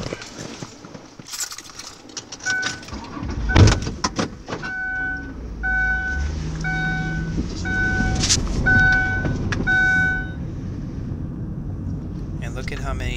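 Clicks and rattles, then a vehicle engine starts and runs with a steady low rumble. Over the engine, an electronic warning beep repeats about once a second for several seconds, then stops.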